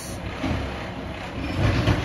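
Garbage truck running loud, a steady low engine rumble with mechanical noise over it.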